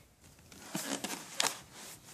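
Soft rustling with a couple of brief knocks, about a second in and again near the middle of the second half: handling noise as the tablet recording it is moved about.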